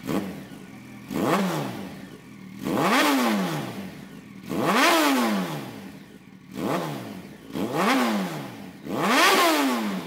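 Yamaha FZ1's inline-four engine idling and blipped about six times, each rev climbing in pitch and dropping back within about a second; the exhaust is really loud.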